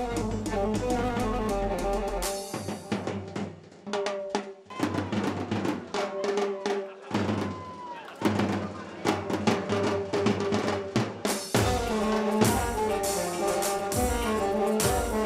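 Live Arabic band with several large double-headed tabl drums beaten with sticks in a driving rhythm over melodic instruments. The full band drops out briefly a few times in the middle, then comes back in.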